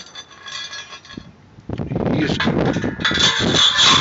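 Metal clinking, then louder scraping and rattling, as a loose steel grate of expanded mesh on rods is handled in the feed opening of a welded sheet-steel rocket stove. There is a light ringing in the first second, and the denser rattling noise sets in after about two seconds.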